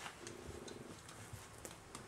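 A Chihuahua puppy growling briefly during play, a short rumbling sound, with a few light clicks from the dogs moving among the toys.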